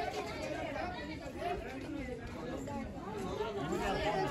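Background chatter: several people's voices talking at once, none of them clearly in front.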